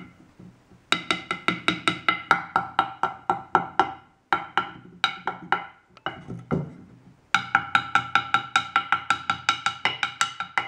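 A glass liquid thermometer rapped repeatedly against a softwood board: sharp wooden knocks with a ringing tone, about four strikes a second in runs broken by short pauses. The rapping is to shake a separated pentane column back together.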